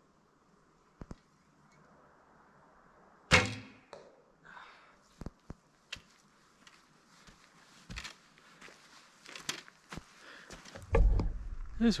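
A shot from an SF Archery recurve bow: the string's release gives one sharp, loud snap about three seconds in. Light, scattered footsteps on the leaf-littered forest floor follow.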